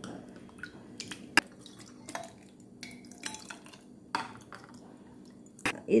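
Metal spoon stirring a milky drink in a glass bowl: soft liquid sloshing with scattered light clinks of the spoon against the glass, one sharper clink about a second and a half in.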